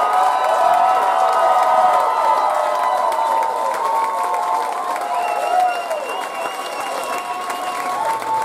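Club audience applauding and cheering for a band taking its bow at the end of a live set, loudest in the first few seconds and easing a little after about five seconds.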